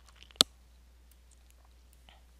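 A single sharp click about half a second in, over near-silent room tone with a faint low hum.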